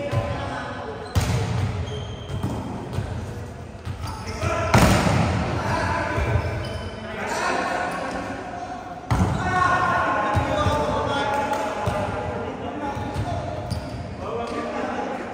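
A volleyball rally in an echoing gym hall: three sharp smacks of the ball being struck, a few seconds apart, among players' shouts and calls.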